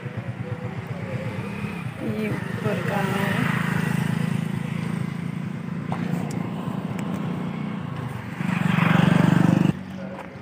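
Motorcycle engine running as it rides past. Near the end a louder burst of engine and road noise cuts off suddenly.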